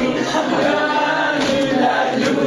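A group of people chanting together, many voices holding overlapping long tones.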